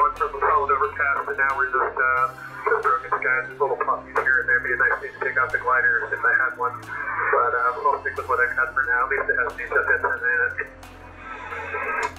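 A man's voice received over 10-meter upper-sideband ham radio, narrow and thin as single-sideband speech sounds, talking steadily and pausing briefly near the end.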